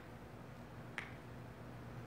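Faint pause with a low steady hum and one short, sharp click about a second in.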